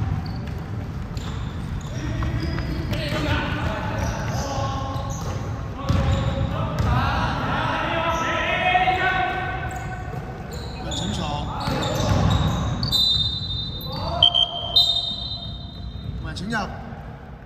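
Basketball being dribbled and bounced on a hardwood gym floor, with players' voices calling out across a large echoing hall. A few short high-pitched tones come in near the end.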